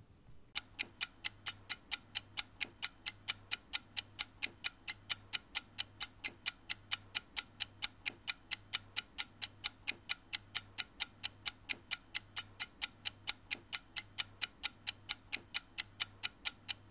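Quick, even clock-like ticking, a little over four ticks a second, over a faint low drone: an outro sound effect.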